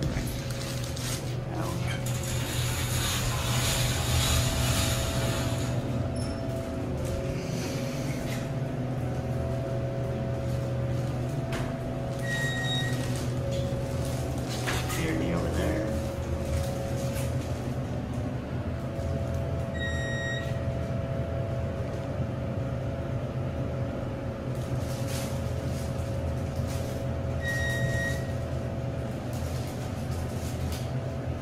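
Hydraulic elevator car travelling down, with a steady low hum from the car in motion. A rush of noise lasts a few seconds near the start, and a single-tone electronic chime sounds three times, about eight seconds apart, as floors are passed.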